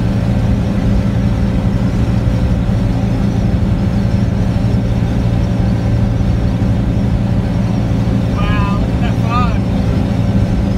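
Steady drone of a pickup truck cruising at highway speed, heard from inside the cab: engine and road noise, with the truck hauling a load and pulling a trailer. A brief voice-like sound twice near the end.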